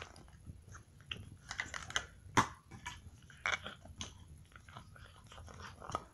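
Irregular small clicks and rustles of toys being handled, with plastic tapping and fabric rubbing, and one sharper click about two and a half seconds in.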